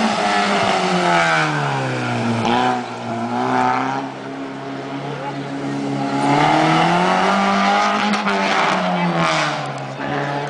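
Toyota Starlet rally car's four-cylinder engine revving hard as it is driven through a tight course. The pitch drops about a second or two in, climbs again around the middle, and falls once more near the end, like a driver lifting off and getting back on the throttle through the bends.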